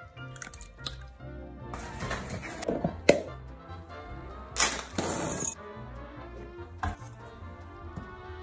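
Background music with a steady bass beat, over scattered clicks and short rushes of noise from ingredients being added to a glass mixing bowl; the loudest rush comes about halfway through.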